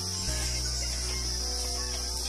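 Insects in the forest trees calling in a steady, unbroken high-pitched drone.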